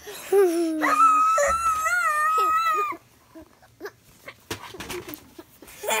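A toddler's voice: a short falling call, then a long, high-pitched shriek held for about two seconds that stops abruptly. Faint scattered clicks and rustles follow.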